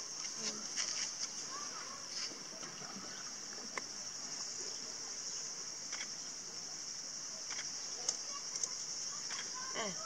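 Steady high-pitched drone of a cicada chorus, with faint voices in the background and a few light clicks.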